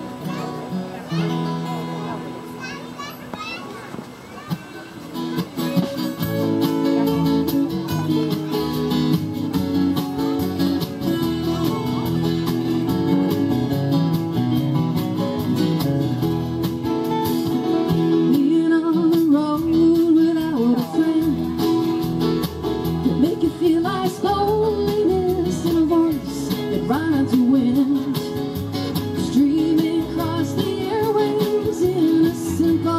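Live band playing with acoustic guitars, electric guitar, keyboard and drums. It starts quieter and thinner, and the full band comes in about six seconds in.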